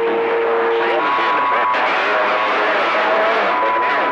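CB radio receiver carrying garbled, overlapping voices that cannot be made out, with steady heterodyne whistles over static: a low whistle for about the first second, then a higher one that comes and goes.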